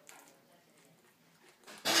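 Quiet chewing and biting into a marinated vine-leaf roll filled with cauliflower, walnut and raisin 'rice'. A woman's voice starts just before the end.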